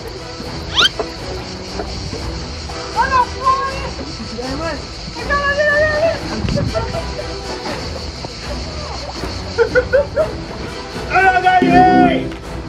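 Background music with a steady beat, with people shouting over it now and then and a loud shout near the end.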